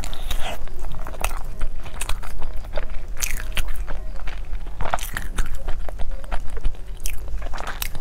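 Close-miked biting and chewing of a dark, rice-filled sausage: a steady run of wet mouth sounds and small sticky clicks, with fresh bites near the start and again near the end.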